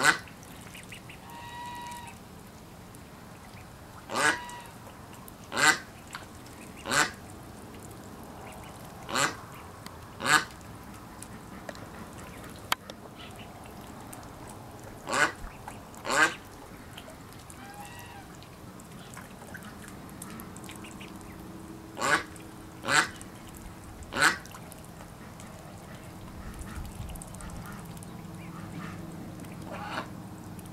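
Domestic ducks quacking: about a dozen short, sharp quacks, often in twos and threes, with pauses of a few seconds between them.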